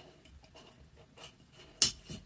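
Faint scraping and ticking of a metal mason-jar lid ring being turned and seated on the glass jar, with one sharp click near the end.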